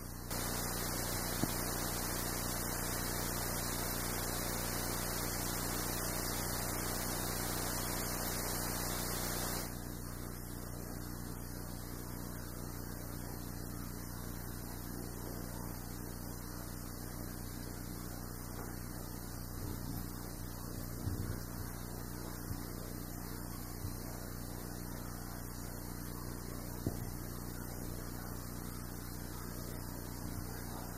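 Steady electrical hiss and mains hum from the recording microphone, with no other sound above it; the hiss is louder for the first ten seconds or so, then drops a step. A few faint ticks come in the second half, from hands handling small plastic parts. The uploader blames such noise on a new microphone he was testing.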